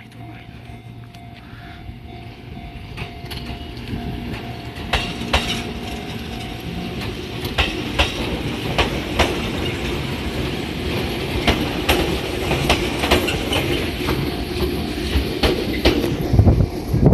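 A Fujikyu 6000 series electric train (ex-JR 205 series) approaching and rolling into the station. Its running noise grows steadily louder, with repeated sharp clacks from the wheels over rail joints and points from about five seconds in.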